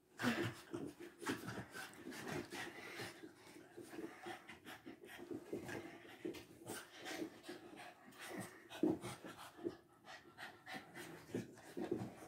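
French bulldog panting in short, irregular breaths while it tugs at a toy ring.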